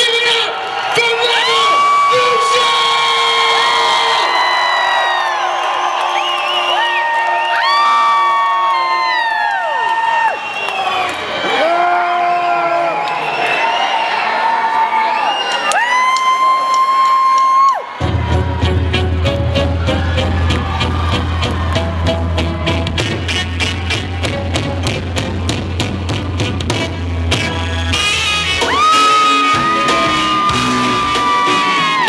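Live reggae band opening a song: tenor saxophone and trombone play long held notes that scoop up and fall away, over crowd cheering. A little past halfway the bass and drums come in suddenly with a steady reggae beat.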